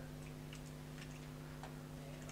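A few faint, irregular computer mouse clicks over a steady low electrical hum.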